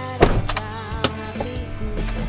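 Background music with a melody plays throughout, and a car door thuds shut about a quarter second in, followed by a few lighter sharp clicks.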